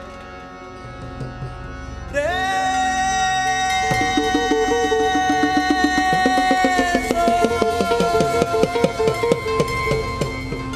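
Live band music: a male singer slides up into a long held high note about two seconds in and moves to a new note near seven seconds, over steady accompaniment. Quick, rapid drum strokes enter about four seconds in and keep going under the held note.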